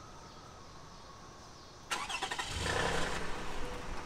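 Car engine cranked by the starter and catching, about two seconds in, then running.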